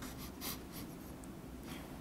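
A person sniffing the air: several short, faint sniffs in quick succession, then one more near the end, searching for the source of a smell.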